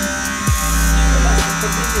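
Electric hair clippers buzzing steadily as they cut hair at the side of the head, under background electronic music with a regular falling bass beat.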